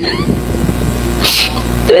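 Room noise picked up by a hearing-room microphone during a pause in a spoken statement: a steady low hum under a noisy haze, with faint voice traces and a short hiss about halfway through.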